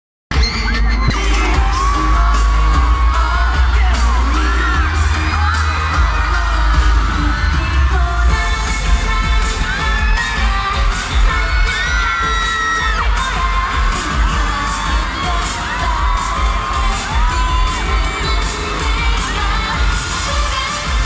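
Live K-pop music played loud through an arena sound system, with singing over a heavy, booming bass and a steady beat, and a crowd of fans cheering and screaming.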